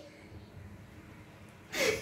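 Faint room tone, then near the end a short, sharp breathy intake of breath from a woman.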